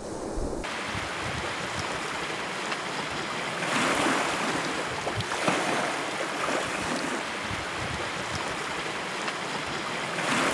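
Surf washing on a pebble and boulder beach: a steady hiss that swells about four seconds in and then eases.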